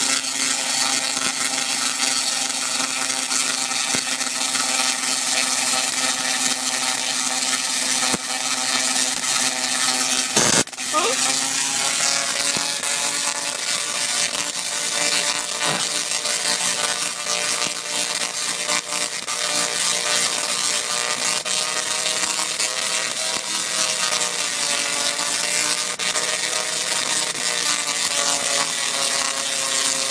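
Tesla coil arcing, its sparks making a loud, steady buzz whose pitch drifts and sags slowly. About ten seconds in the buzz breaks off sharply for a moment, and its pitch slides up as it resumes.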